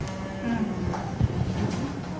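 A soft, steady droning hum made of a few held tones.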